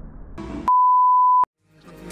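A single steady electronic beep, one pure tone lasting under a second and cut off abruptly, with the background music dipping out around it.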